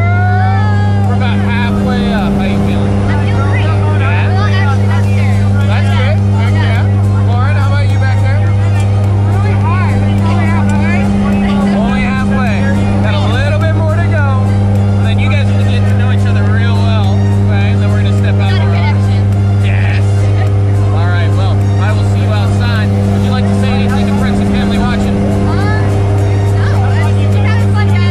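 Steady, loud drone of a turboprop jump plane's engines and propellers heard inside the cabin in flight: a deep hum with a higher overtone above it.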